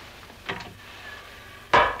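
Two short knocks in a small room, a faint one about half a second in and a much louder one near the end.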